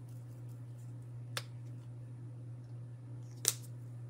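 Two short clicks, a faint one and then a louder one near the end, as a small bottle of acrylic craft paint is handled, over a steady low hum.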